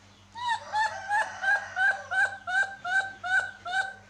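Newborn baby macaque crying: a rapid, rhythmic run of about ten short, high calls, roughly three a second, starting about half a second in.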